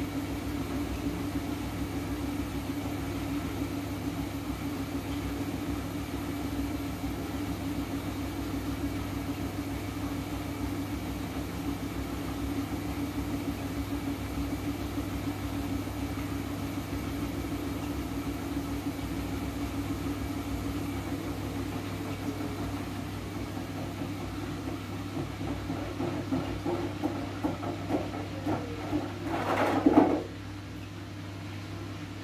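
Siemens front-loading washing machine on its 400 rpm wool spin, with a steady motor hum. In the last few seconds the drum slows, the load knocks and rattles, and the sound cuts off suddenly.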